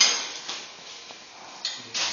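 Metal clanking from work on a bolted frame of perforated square steel tubing: a sharp clank at the start that rings off, then fainter knocks about half a second in and near the end.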